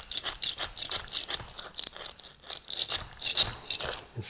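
Razor scraper blade shaving cured Flexible Cement II polyurethane crack filler off the face of a concrete paver: a quick run of short, hissing scrapes, several a second.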